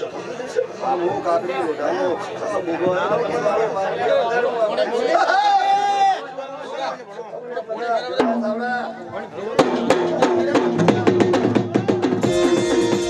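Overlapping voices and chatter, with one long sung note about five seconds in. About ten seconds in, folk music strikes up: rapid drum strokes over a steady held instrument tone.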